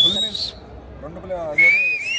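High-pitched whistles from the crowd: a short rising whistle right at the start and another beginning near the end, both the loudest sounds here, over low background voices.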